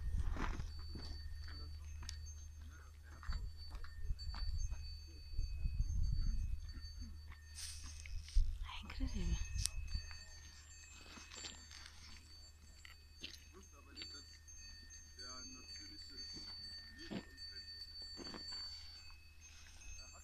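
Faint, intermittent ringing of small bells over a steady low wind rumble on the microphone, with a few faint distant voices.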